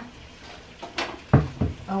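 Kitchen handling knocks: a sharp click about a second in, then two dull, heavy thumps in quick succession, the loudest sounds here.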